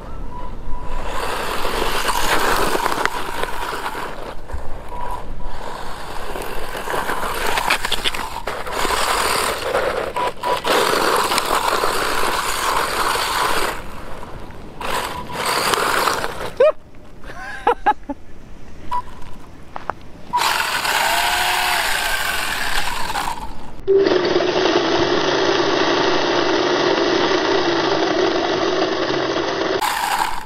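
Edited run of outdoor clips of a small electric RC buggy being driven: mixed motor whine, tyre and wind noise that changes abruptly at each cut, with rising and falling whines about two-thirds of the way through.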